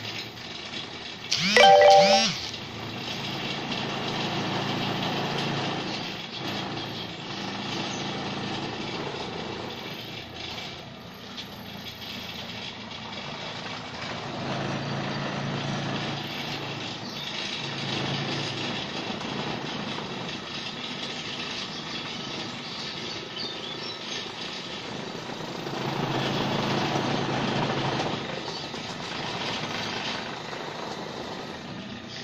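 Homemade drill built from a washing-machine motor with a drill chuck welded on, running with its bit grinding into sheet metal, the sound swelling and easing as the pressure changes. About two seconds in there is a brief, loud squeal that rises and falls in pitch, the loudest moment.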